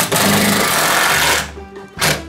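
Cordless drill driving a screw through a washer and plastic barrel into a wooden frame, running steadily for about a second and a half and then stopping.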